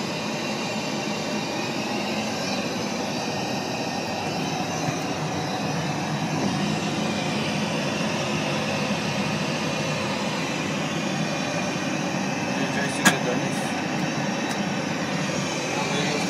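Steady airliner cabin noise of a plane in flight, heard inside the lavatory, with one sharp click late on.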